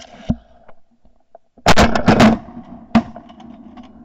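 Shotguns firing: a thump near the start, then a quick volley of several shots about halfway through, and one more shot about a second later.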